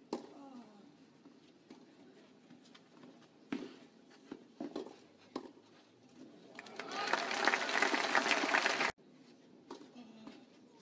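Tennis ball struck with racquets in a rally, a few sharp hits about a second apart, then crowd applause that swells up and cuts off suddenly near the end.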